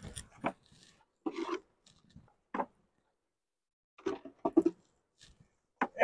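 Wooden hive frames creaking and knocking against the nuc box as they are lifted out, in a few short separate bursts.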